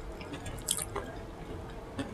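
Fingers gripping a breaded patty and lifting it off a sauce-smeared plate: a few soft, wet squishes and clicks, the sharpest about two-thirds of a second in.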